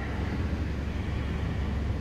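Steady low hum of an idling van engine, heard inside the cab.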